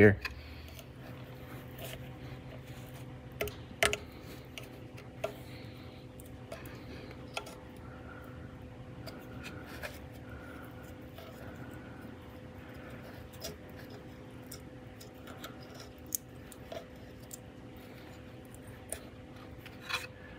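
Sparse small clicks and scrapes of fingers and a tool working at the groove of an aluminium oil-filter housing, picking out a crumbling old O-ring. A steady low hum runs underneath.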